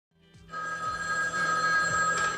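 Rotary desk telephone ringing: a steady, high two-tone ring that starts about half a second in and keeps going.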